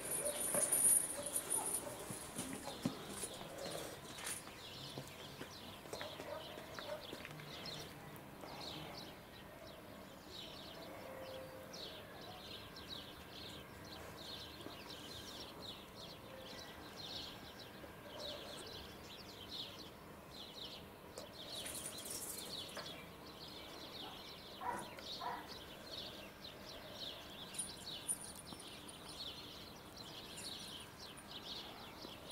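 Small birds chirping in the background, a rapid run of short, high chirps repeated over faint outdoor ambience, with a few scattered clicks.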